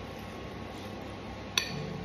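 A metal fork clinks once against a glass mixing bowl about one and a half seconds in, with a short ringing tail, over a steady low room hum.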